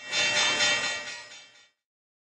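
A short musical sting accompanying the on-screen disclaimer card: a bright, sustained chord that swells in and fades away within about a second and a half.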